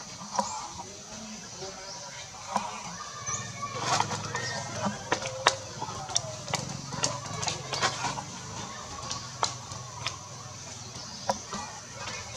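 Long-tailed macaques making short calls in a tree, among many sharp snaps and rustles of branches and leaves, over a steady high hiss.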